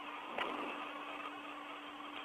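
Open radio channel between transmissions: a steady hiss with a low hum tone, and a short click about half a second in.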